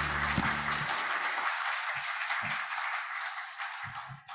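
Congregation applauding, a dense steady clapping that begins to thin near the end, while the last chord of the hymn accompaniment fades out in the first second. A few low thumps are heard under the clapping.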